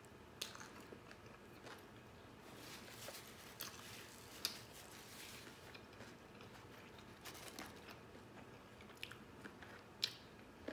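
Faint close-miked chewing of a sub sandwich: soft wet mouth sounds and small clicks, with one sharper click about four and a half seconds in.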